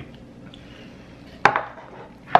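A single sharp knock about one and a half seconds in: a drinking cup set down on the tabletop, over faint room tone.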